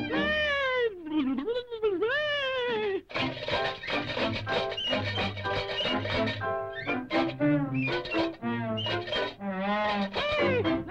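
A cartoon's orchestral score, with loud yowling cries that swoop up and down in pitch through the first three seconds and again near the end.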